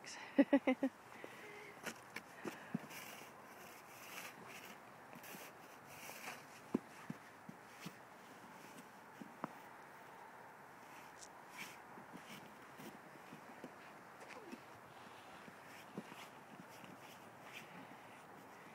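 A short voice sound right at the start, then faint, irregular crunches and scuffs in packed snow as a small child kneels and crawls about.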